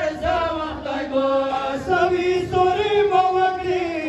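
A group of men chanting a noha (Shia lament) in unison, a lead reciter singing into a microphone with the others' voices layered over his.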